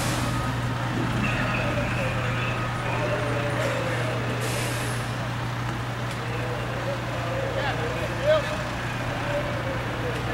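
A heavy truck engine, most likely a fire engine's diesel, running steadily with a constant low hum, under faint distant voices. One short, louder sound comes a little after eight seconds.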